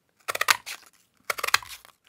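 A plastic craft circle punch and a strip of punched paper being handled: two bursts of crinkling paper and small plastic clicks, the second one about a second in.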